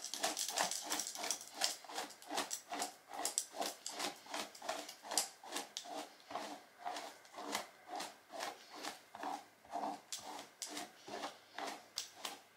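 Paddle brush dragged through wet, conditioned hair in quick repeated strokes, about three a second.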